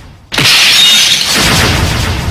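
Glass shattering, a trailer sound effect: after a brief hush, a sudden loud crash of breaking glass about a third of a second in, trailing off slowly.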